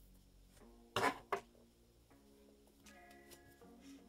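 Two sharp clicks about a second in, a third of a second apart: metal nail clippers snipping off the tag ends of monofilament fishing line at a freshly tied knot. Faint background music plays underneath.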